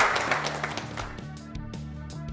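A small group applauding, dying away about a second in, over background music that then carries on alone.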